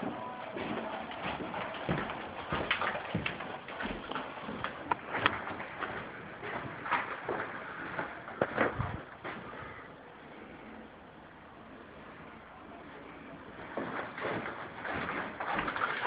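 Footsteps and small knocks while walking across a ceramic tile floor, irregular through the first half and quieter after about ten seconds.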